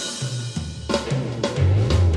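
Rock band music between sung lines: drum kit hits over a low, moving bass line, with no singing.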